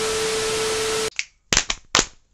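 TV static sound effect: a loud hiss of white noise with a steady tone inside it, lasting about a second and then cutting off abruptly. A few sharp clicks follow near the end.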